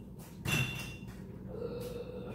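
A single clunk about half a second in, as of something hard knocking in a kitchen, with a short 'uh' at the same moment; a low steady hum runs underneath.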